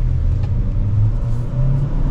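The 2025 Chevrolet Equinox's turbocharged 1.5-litre four-cylinder pulls under acceleration through its CVT, a steady low drone heard from inside the cabin along with road noise.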